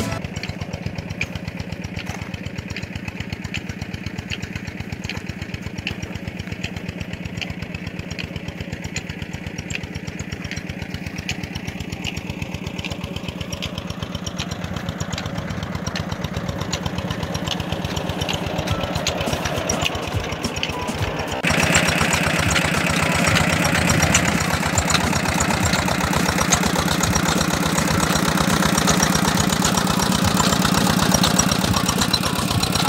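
Single-cylinder 'Peter' diesel engine running steadily, driving a tube-well water pump. It becomes suddenly louder about two-thirds of the way through.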